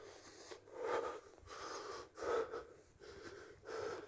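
A person breathing audibly close to a phone's microphone, about four breaths a second or so apart.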